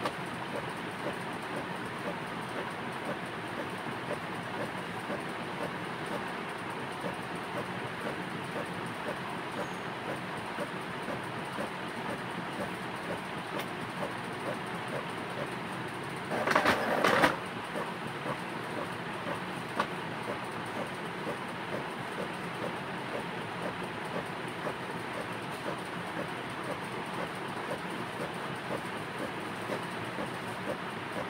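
Steady background noise with faint regular ticking. About seventeen seconds in comes a brief, louder rustle of paper sheets being handled.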